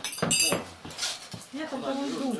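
Dishes clinking as plates are gathered from a dinner table: a quick pair of bright, ringing clinks right at the start, with people's voices in the room.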